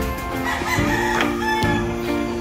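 A rooster crows once, starting about half a second in, over steady background music.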